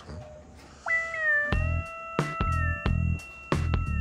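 Background music starts about a second in: a high, held note that bends at its start, over a steady, bass-heavy beat.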